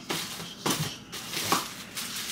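Plastic packaging crinkling and rustling as it is handled, in a few short bursts.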